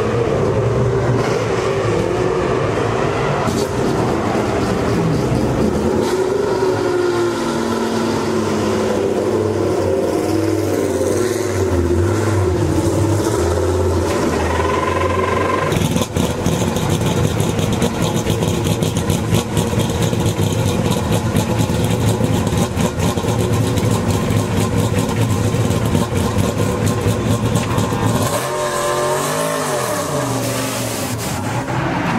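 LMP3 prototype's Nissan V8 idling loud and uneven, with a rough, crackling burble for much of the time. Near the end the engine pitch rises as the car pulls away.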